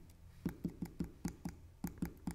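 Rapid light taps of a liquid glue bottle's tip dabbing dots of glue onto cut cardstock, about five a second, starting about half a second in.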